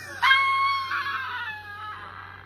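A man's loud, high-pitched shriek of laughter. It is one long cry that starts about a quarter second in, slides slowly down in pitch, and fades away.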